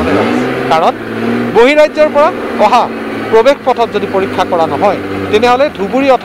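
A motor vehicle engine running with a steady hum that rises briefly at first, holds, then fades near the end, under a man's voice speaking to the camera.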